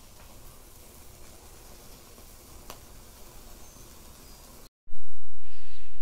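Quiet outdoor morning ambience: a faint, even hiss with one soft click a little before the middle. Near the end the sound cuts out for an instant and a much louder low rumble takes over.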